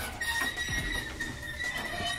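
Toy hauler trailer's rear ramp door squealing as it swings down: one long, steady, high-pitched squeal that starts just after the beginning.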